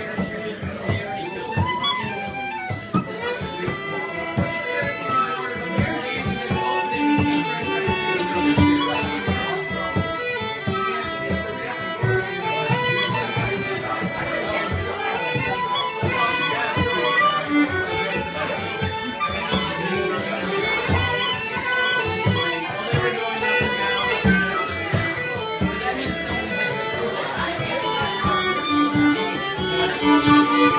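Band music with a fiddle carrying the tune over a steady drum beat.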